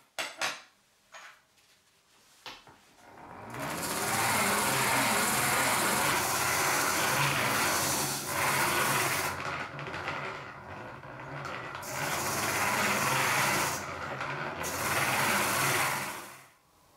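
A few light knocks, then a hand-cranked bench grinder running with a steady rasping noise and a low rumble from its gearing, broken by two short pauses.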